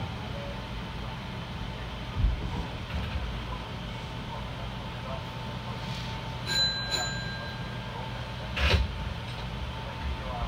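Inside the cab of a stationary electric commuter train: a steady low hum of the train's onboard equipment with a faint steady whine, a couple of dull thumps, and a short metallic ring with clicks about six and a half seconds in.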